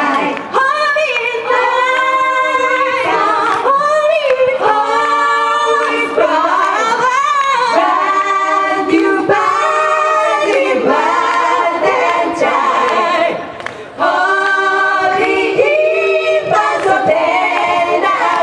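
A group of women singing together into microphones, held sung notes with a short break about thirteen and a half seconds in.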